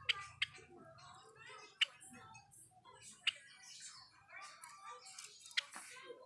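Java sparrow giving short, sharp call notes: five quick chips, two close together right at the start, then single ones spaced a second or more apart.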